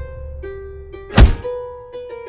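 A single heavy punch-hit sound effect, a loud thud a little over a second in, over gentle plucked-note background music.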